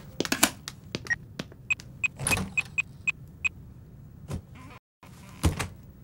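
Mobile phone keypad beeping as a number is dialled: a quick run of about seven short, high beeps over a second and a half, among soft clicks and a light knock.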